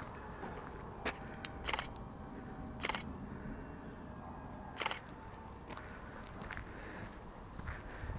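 Footsteps on a loose gravel and dirt road, a few irregular short crunches over a low rumble of wind and camera handling.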